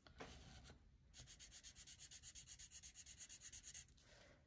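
Felt-tip marker coloring in a square on a paper card: a couple of short scratches, then quick, even back-and-forth strokes, about nine a second, faint.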